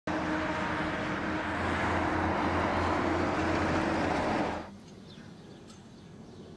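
Loud, steady vehicle engine and road noise with a low hum, which cuts off abruptly about four and a half seconds in.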